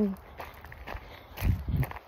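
Footsteps of a person walking on a trail, with a low thump about one and a half seconds in.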